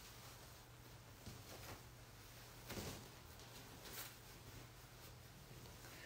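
Near silence with a few faint, soft rustles of a cotton sari being unfolded and shaken out, over a low steady hum.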